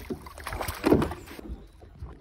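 Water splashing and a few knocks as a landing net holding a pikeminnow is lifted out of the lake and into a canoe, loudest about a second in.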